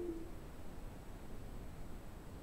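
A short two-note falling electronic chime from the computer at the very start, then only faint room noise. The chime is the kind Windows plays when a USB device drops out, here as the board resets for the code upload.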